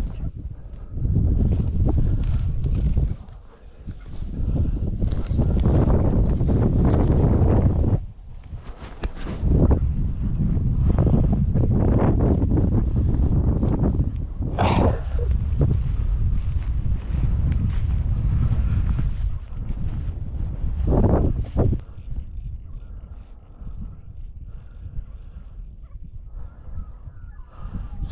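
Heavy, irregular rumbling on the body-worn camera's microphone, coming and going in long gusts, typical of wind buffeting and movement as the wearer walks over grassland; it drops away to a quieter background in the last few seconds.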